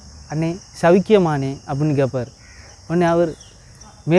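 A man talking in short phrases, over a steady, high-pitched drone of insects.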